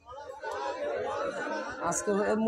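Many people in an audience talking at once, a crowd murmur of overlapping voices that rises about half a second in. A single man's voice cuts in clearly near the end.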